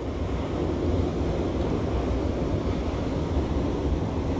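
Steady rush of water at a spillway, with wind rumbling on the microphone.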